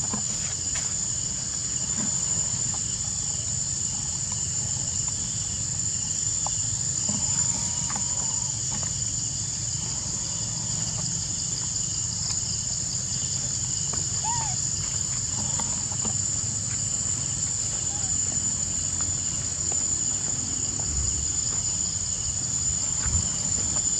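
Steady, high-pitched chorus of insects droning without a break, with a few faint short chirps over it.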